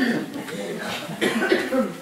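Voices with a cough among them.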